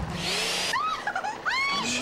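Hand-held salon sink sprayer hissing as water rinses hair, for under a second. It is followed by a run of short pitched sounds that each rise and fall.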